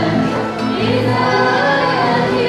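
An Arabic Christian hymn sung by voices, with piano and guitar accompaniment, the notes held and sustained.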